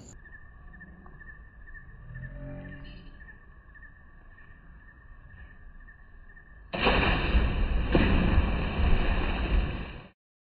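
Faint background, then about seven seconds in a person hits the water of a swimming pool off a backflip: a sudden loud splash whose noise carries on until it cuts off abruptly.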